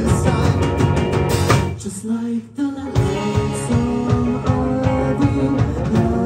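Live rock band playing: electric guitars, bass and drums. About two seconds in, the band cuts out for about half a second, then comes back in with voices holding long notes over the band.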